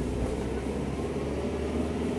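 A car's engine and road noise heard from inside the cabin while driving in slow traffic, a steady hum.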